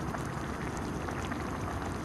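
Tomato stew simmering in an aluminium mess tin on a camping gas stove: a steady hiss with faint bubbling.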